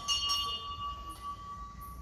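Hanging metal temple bell rung by hand: a light strike near the start, then one steady ringing tone that slowly fades.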